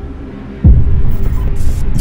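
Soundtrack sound design: a low drone, then about two-thirds of a second in a sudden deep boom that falls in pitch and carries on as a loud low rumble. Short hissing glitch noises come in the second half.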